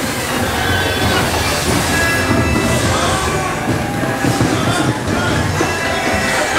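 Show soundtrack music over a steady low rumble from the moving ride vehicle and scene effects.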